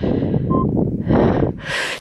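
A woman breathing hard close to the microphone, with rough wind noise on it, between spoken phrases.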